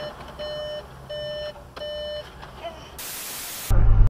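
Car's electronic warning chime beeping three times, each beep about a third of a second long and roughly two-thirds of a second apart, over a low steady cabin rumble. Near the end a short burst of loud hiss and then a loud low thump cut off abruptly.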